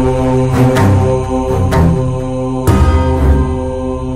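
Film score music: a held, chant-like drone over low sustained notes, cut by sharp struck accents about once a second.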